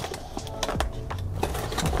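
Utility knife slitting the packing tape and cardboard of a shipping box, a run of short scratchy clicks.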